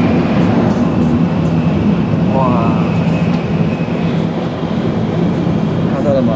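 Interior running noise of a Tokaido Shinkansen at speed, heard from beside the carriage window: a loud, steady rumble with a low hum and a faint high whine. A short voiced exclamation comes about two and a half seconds in.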